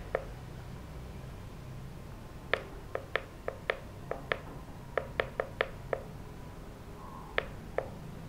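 Pushbutton on an EarthPulse V6 PEMF controller clicking under a thumb as the frequency is stepped up: one click at the start, then a quick run of about a dozen clicks at roughly three or four a second, then two more near the end.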